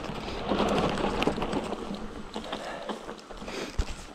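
Mountain bike rolling fast downhill over a dirt and dry-grass trail: a steady rush of tyre noise with small rattles and clicks from the bike, and a single thump near the end as it hits a bump.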